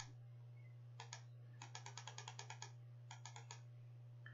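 Faint computer mouse button clicks: a single click, two more about a second in, then a quick run of about ten, and four more near the end, as the next-month arrow of an on-screen calendar is clicked repeatedly.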